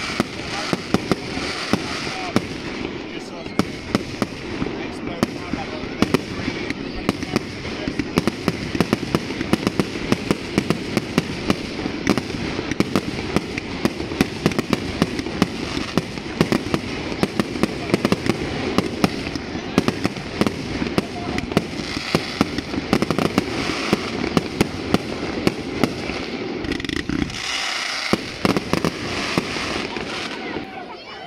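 Aerial fireworks display: a continuous, rapid barrage of bangs and crackling from shells bursting, over a steady rumble. The rumble drops away near the end, leaving a few last cracks.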